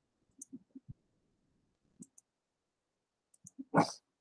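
A few faint, scattered computer-mouse clicks, with one short, louder noise near the end.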